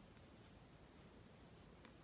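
Near silence: faint room tone, with a few faint scratches of beading thread being drawn through the beads in the second half.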